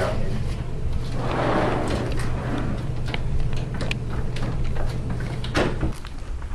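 A door being opened: a sliding rumble about a second and a half in, then scattered clicks and knocks, over a steady low hum. A sharper knock comes near the end.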